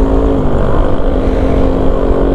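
Motorcycle engine running at a steady cruising speed, one even engine note with low road and wind rumble beneath, heard from the rider's seat.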